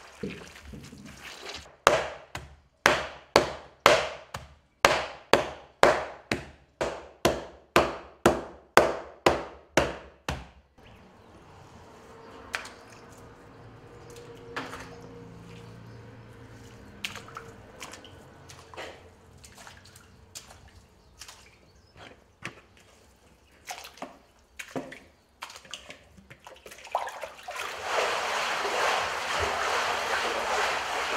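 Wet papermaking fibre beaten with wooden sticks on a stone counter: sharp, even strikes about two a second for roughly nine seconds. Then quieter wet handling of the fibre with scattered drips and small clicks, and near the end a loud steady sloshing as the fibre is stirred in the water vat.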